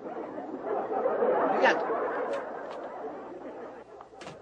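Studio audience laughing, a dense crowd laugh that swells about a second in and dies away toward the end.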